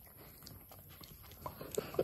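A young German Shepherd nuzzling and licking right at the microphone, giving faint wet clicks and rustles that come thicker in the second half.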